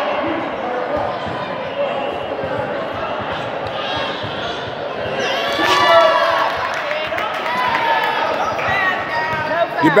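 Basketball being dribbled on an indoor court, with voices shouting now and then. The loudest shouting comes about six seconds in and again at the very end.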